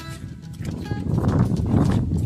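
Background music, joined about half a second in by loud, rough, irregular low noise of a handheld camera being carried through grass: footfalls and handling or wind on the microphone, growing louder.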